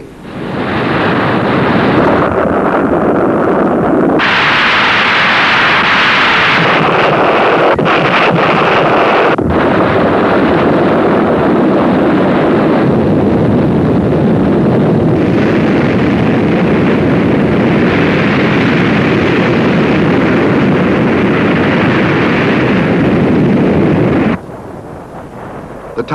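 Loud, continuous rumbling noise from a dubbed sound effect for a volcanic blast and the tidal wave it sets off. It grows harsher about four seconds in and cuts off suddenly about a second and a half before the end.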